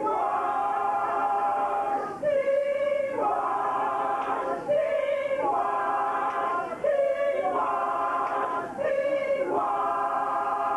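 Adult a cappella gospel chorus singing, voices only. A single held note returns about every two seconds, each time answered by fuller, many-part chords.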